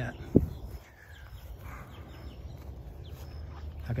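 A single dull thump about a third of a second in, the loudest sound here, then faint outdoor background with a few faint, high bird chirps.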